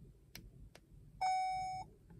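A couple of faint clicks, then a single steady electronic beep lasting a little over half a second. The beep marks the remote's transmitter code being saved to the car.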